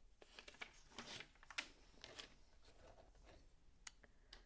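Faint clicks and rustles of LEGO pieces being handled, a handful of soft strokes with one sharper click near the end.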